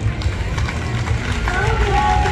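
Outdoor parade crowd noise: voices over a steady low pulsing beat, with a held tone coming in about three-quarters of the way through.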